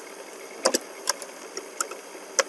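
Computer keyboard keys clicking as a word is typed: a handful of separate, unevenly spaced keystrokes over a steady background hiss.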